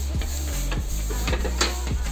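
Scattered clicks, knocks and rubbing of a window frame being handled and pushed open, over a steady low hum.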